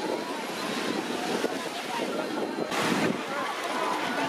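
Beach ambience: small waves washing onto the sand at the shoreline, with wind on the microphone and distant voices. A slightly louder wash comes about three seconds in.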